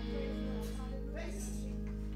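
Church organ holding a soft, steady chord between songs, with a faint voice over it in the middle.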